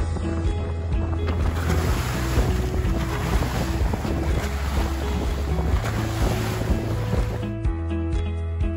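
Background music with a steady bass line, overlaid from about a second in by wind on the microphone and the rush of waves aboard a sailing yacht. The wind and water noise cuts off just before the end, leaving the music.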